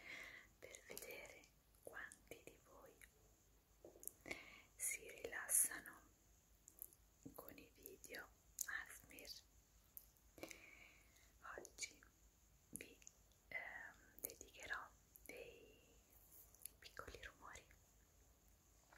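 A woman whispering softly in short phrases with pauses between them.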